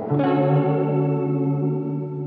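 Closing theme music: a held chord, then a new chord coming in about a quarter second in and ringing on steadily.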